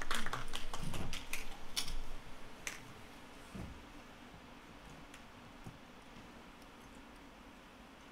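A few scattered audience handclaps, thinning out and fading over the first three seconds, then the faint hush of a quiet room.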